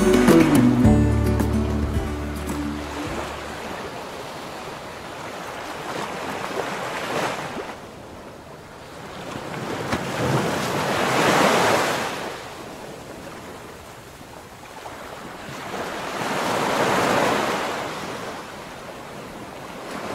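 Small waves breaking and washing up a sandy beach, the surf swelling and easing three times.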